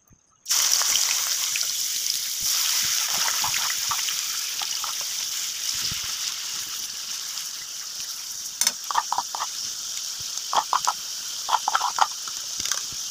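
Chopped onion hitting hot oil in a pan, breaking into a loud sizzle all at once about half a second in and then frying steadily, slowly easing off. Short bursts of a metal spoon knocking come near the end, as the last of the onion is scraped from the bowl.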